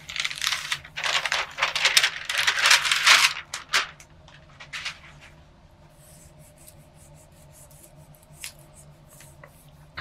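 Hands rubbing and smoothing a sheet of paper pressed onto a gel printing plate, a dry paper rustle and scrape. It is busiest for the first three seconds, then drops to a few faint rustles and light ticks.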